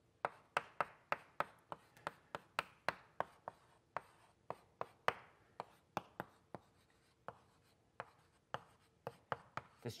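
Chalk writing on a blackboard: a run of sharp taps and short scrapes, about two to three a second, as a structural formula is written out stroke by stroke, slowing briefly for a moment past the middle.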